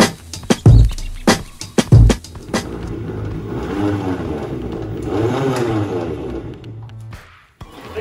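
Intro music beat for the first couple of seconds. Then an EZGO golf cart's drivetrain whirs, rising and falling in pitch twice, as the axle spins inside a worn rear hub whose splines are stripped, so the wheel does not turn with it.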